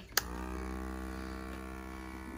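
Small electric hearing-aid cleaning vacuum pump switched on with a click, its motor then running with a steady hum.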